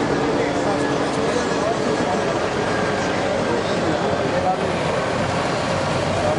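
Several people talking indistinctly over the steady running of truck engines and road traffic.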